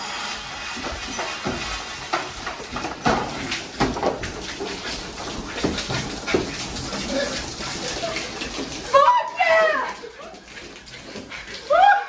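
Cereal poured from a box and scattering onto a glass tabletop, then milk splashing out of a gallon jug over a seated person, with many irregular splats and clatters. A voice shouts about nine seconds in.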